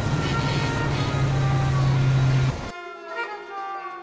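Airliner turbofan engine running: a loud rushing noise over a steady low hum, which cuts off abruptly about two and a half seconds in, giving way to string music.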